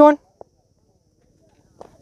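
A commentator's voice ending on the word 'one', then near silence broken by a single faint click and a few faint taps near the end.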